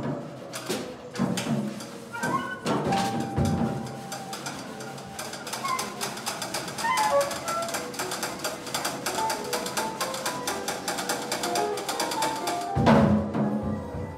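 Free-improvised jazz from a drum kit, soprano saxophone and grand piano: rapid dry clicks and taps on the drums with scattered short high notes and a soft held tone in the middle, then a loud low hit near the end.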